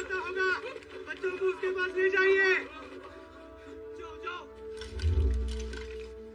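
Film soundtrack: voices over background music with sustained held notes for the first two and a half seconds, then a deep low boom about five seconds in.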